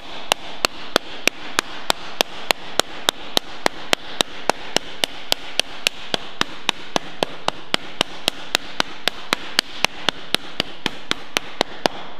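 A high-crown hardwood slapper striking a flat sheet-metal panel in a steady, even rhythm of about four sharp slaps a second. The repeated blows are raising crown in the panel, adding shape in both directions.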